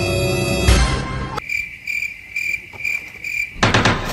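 Tense music ends with a hit under a second in, then a cricket-chirping sound effect: five chirps about two a second over near quiet. A loud burst of noise cuts in near the end.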